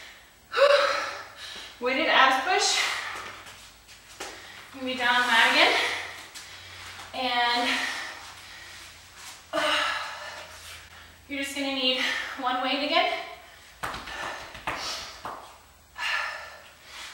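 A woman speaking in short phrases with breathy gasps between them, winded from a set of jumping jacks.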